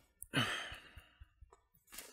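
A man's single short, breathy sigh, about a third of a second in.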